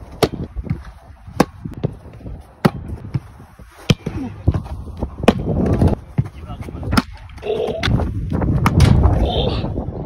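A football being struck over and over in a goalkeeper shot-stopping drill: sharp thuds of the ball being kicked and smacking into goalkeeper gloves, about one every second or so, over a steady low rumble.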